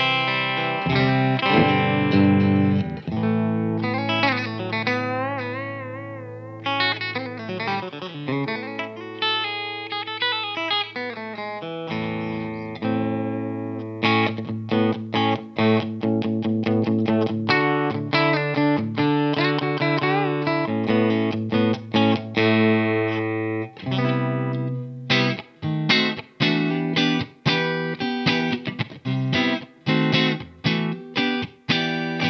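Fender American Vintage II 1951 Telecaster, an electric guitar with single-coil pickups, played through an amp. It opens with held notes and bends shaken with vibrato, moves to rhythmic chopped chords about halfway through, and ends with short, clipped chord stabs.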